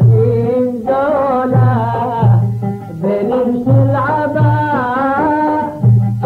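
A Gulf Arabic song: a man singing a wavering melodic line to oud accompaniment over a low repeating beat.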